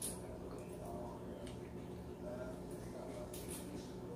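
Quiet room tone with a steady low hum, and faint mouth sounds and small clicks from people tasting spoonfuls of soft cherimoya flesh.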